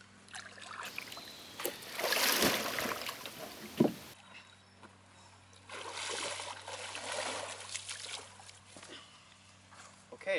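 Feet wading through shallow river water, splashing and sloshing in two stretches: a louder one from about one to four seconds in, and another from about six to eight seconds.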